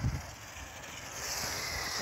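Taiyo Iron Claw RC car running through a puddle: a hiss of water spray builds about a second in, over low wind rumble on the microphone.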